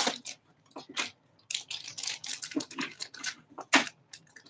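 Clear plastic bags crinkling and rustling as trading cards in rigid top loaders are handled and pulled out, in short irregular crackles with a sharper one near the end.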